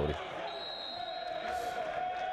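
Live court sound of an indoor volleyball match in a large, echoing sports hall: players' voices, with one long held call from about half a second in.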